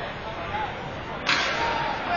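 Ball hockey sticks clashing at a faceoff, a sudden loud clatter just over a second in, over the chatter of players and spectators.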